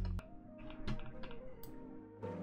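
A few quiet clicks on a computer, spread through the two seconds, over faint music.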